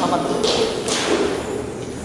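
Two short scuffing thuds, about half a second and a second in, over a steady hiss.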